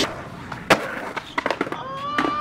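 Skateboard on concrete: wheels rolling, one loud sharp crack of the board about a third of the way in, then several lighter clacks.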